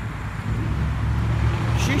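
Low, steady engine rumble of a nearby road vehicle, swelling about half a second in and holding steady.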